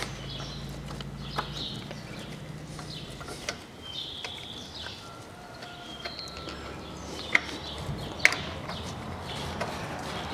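Birds chirping in the background while hands work on the timing belt and tensioner roller, giving a few sharp clicks; the two loudest come about seven and eight seconds in. A low hum stops about two seconds in.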